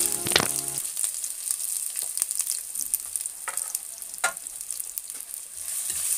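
Chopped ginger sizzling steadily in hot oil in a wide kadai, with a spatula stirring it and a few sharp clicks against the pan.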